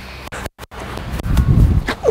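A bowler's footsteps on an artificial-turf net pitch, low heavy thuds building through the delivery stride, then a single sharp knock of the cricket ball near the end as the batter leaves it.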